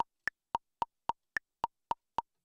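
Metronome click ticking steadily at a bit under four clicks a second, every fourth click higher-pitched to mark the downbeat: a count-in before the brush groove starts.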